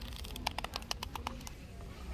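Paper pages of a journal riffled quickly, about ten flicks in just over a second, starting about half a second in.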